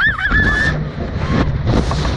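A girl's high-pitched scream, wavering in pitch and held for under a second, as the reverse-bungee slingshot ride launches. Rushing wind noise on the microphone follows as the capsule flips over.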